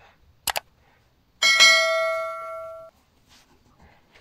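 Subscribe-button animation sound effects: a quick double mouse click, then a bright notification bell ding that rings for about a second and a half, fading, and then cuts off suddenly.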